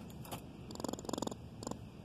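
A gray squirrel trapped in a wire-mesh live trap, moving about the cage. About a second in there are two short bursts of fast pulsing, with a few light clicks and rattles of the wire mesh around them.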